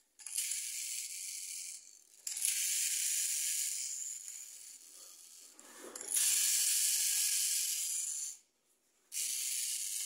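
Battery-powered toy Thomas engine running while held in the hand: a high hissing whir from the toy, in four spells of one to two seconds with short silent gaps between them.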